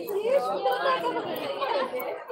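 Voices talking and chattering, with more than one person speaking at once.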